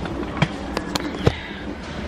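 Handling noise from the camera being picked up and swung around: a few sharp clicks and knocks over a low rumble.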